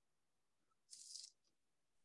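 Near silence in a pause between speech, with one faint, brief hiss about a second in.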